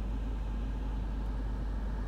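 Steady low rumble of a car's engine idling, heard from inside the cabin while the car stands still.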